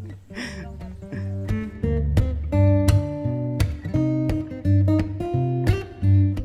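Background music: acoustic guitar plucking and strumming a run of notes, quieter in the first second or so and fuller from about a second and a half in.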